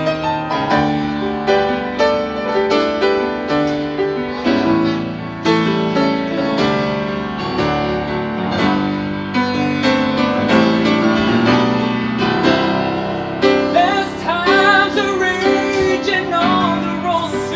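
Grand piano played solo: struck chords under a moving melody line. Near the end a singing voice with vibrato comes in over the piano.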